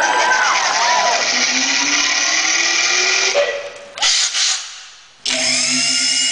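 Loud, drill-like buzzing noise through the PA, most likely made into the handheld microphone by the centre performer, that cuts off about three and a half seconds in, bursts briefly, fades, and comes back suddenly near the end. Audience screaming and cheering rises over it at the start and the end.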